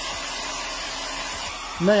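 Handheld hair dryer blowing steadily over a wet, frozen goose's feathers to warm it.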